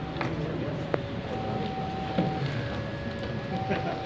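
Indistinct voices of a crowd murmuring, with several held steady tones at different pitches, each lasting about a second, and one sharp click about a second in.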